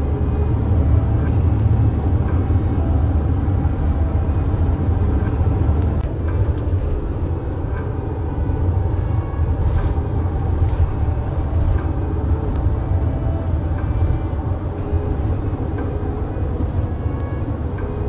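Steady low rumble of a Mercedes Sprinter 4x4 van driving at highway speed, engine and road noise heard inside the cab.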